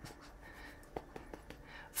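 A quiet pause with faint room tone and a few soft clicks about a second in and again near the end.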